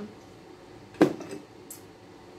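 A black plastic beehive frame being handled along with a metal hook hive tool: one sharp knock about a second in, followed by a few light clicks.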